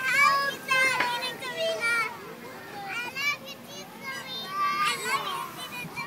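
Young children's high-pitched voices, calling out and chattering in several short bursts with sliding pitch.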